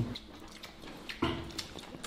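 Eating at the table: light clicks of chopsticks against porcelain rice bowls, with one short voiced call about a second in.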